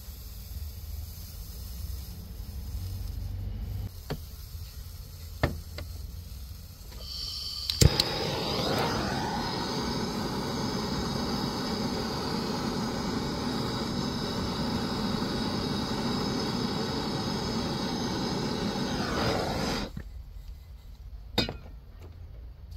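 Handheld gas torch: gas hisses, it lights with a sharp click about eight seconds in, then burns with a steady hiss for about twelve seconds before it is shut off abruptly. It is heating a soldered ground-wire joint on the car body. A few sharp clicks come earlier.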